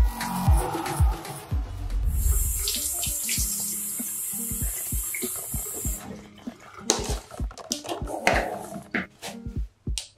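Water running from a bathroom sink faucet and splashing in the basin in the second half as hands are rinsed, under background music with a steady beat.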